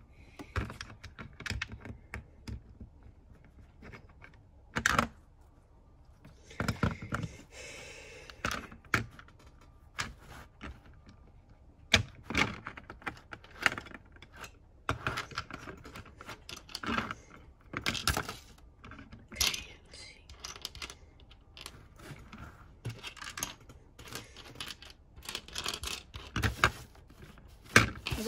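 Plastic LEGO bricks being handled and pressed onto a baseplate: irregular sharp clicks and taps of plastic on plastic.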